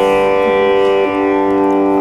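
Tanpura drone sounding steadily, a rich, shimmering sustained chord of overtones, with another string coming in about a second in.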